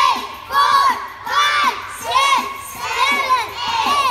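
A group of preschool children shouting together in unison, in a steady rhythm of about six loud shouts, each rising and falling in pitch.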